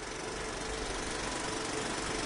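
A steady mechanical whirr with a fast, fine low rattle under an even hiss, unchanging throughout.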